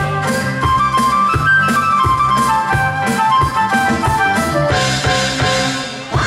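Live band playing an instrumental break: a flute-like lead melody in held notes stepping downward over a steady drum-kit beat and bass.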